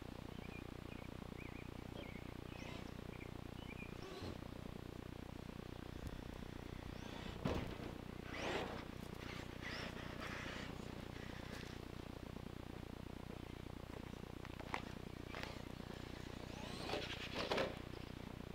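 Traxxas E-Maxx electric RC monster truck driving on a loose dirt track, heard as a few short bursts of motor and tyre noise, clustered as it passes close by and again near the end.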